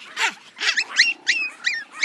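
Pomeranian puppies yipping at play: a few short yelps, then a quick run of high cries that sweep upward in the second half.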